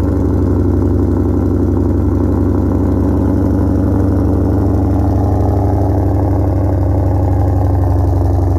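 Ford Shelby GT500's supercharged V8 idling steadily through its exhaust shortly after a cold start.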